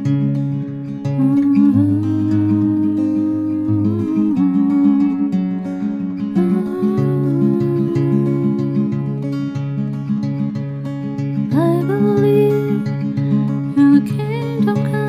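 Acoustic guitar playing a steady repeating pattern, with a wordless sung line above it in long held notes that slide up between pitches.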